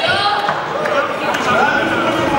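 Men's voices shouting in a large, echoing sports hall during a kickboxing bout, with a couple of sharp thuds from the fighting in the ring.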